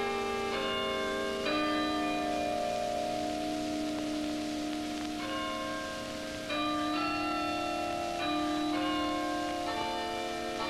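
Tower chime bells playing a slow tune: a new bell note is struck about every second, and each one rings on under the next.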